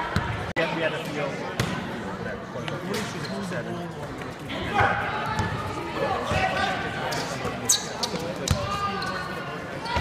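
A basketball bouncing on a wooden gym floor in play, with scattered thuds over players and spectators calling out, louder calls around the middle and near the end.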